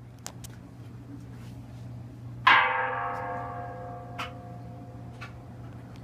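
Steady low hum of a 1966 Philco Flex-A-Wash washing machine running, with scattered light ticks. About two and a half seconds in, a sudden metallic strike rings out like a bell and slowly fades.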